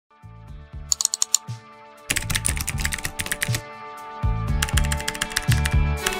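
Computer keyboard typing sound effect in quick runs of clicks: a short run about a second in, a longer one from about two seconds, and another near the end. They play over background music with steady held notes and a repeating bass beat.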